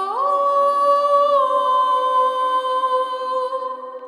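Wordless vocal music of held, layered notes with no bass. The voice glides up shortly after the start, dips slightly a little over a second in, then holds and fades near the end.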